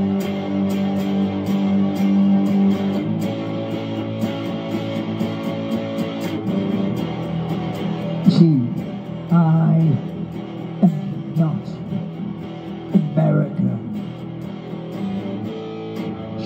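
Les Paul-style electric guitar played through a small combo amplifier, strummed chords ringing on steadily. From about halfway through, a man's voice comes in over the guitar.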